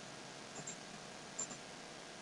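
Computer mouse button clicks, faint, in two quick pairs about a second apart, over a low background hiss.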